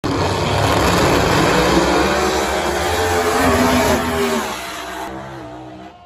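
Two drag racing cars, one of them a Chevy Camaro, launching and running down the strip at full throttle. The engine pitch climbs, then the sound fades over the last two seconds as the cars pull away.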